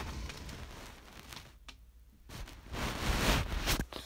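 Handling noise from a phone being carried with its lens covered: its microphone rubbing and scraping on cloth. The rubbing dies down briefly before halfway, then comes back louder with a few sharp knocks.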